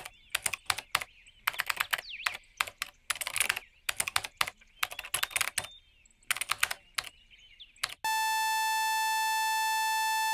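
Rapid laptop keyboard typing in irregular bursts of key clicks. About eight seconds in, the typing stops and a steady electronic buzzing tone cuts in suddenly and holds.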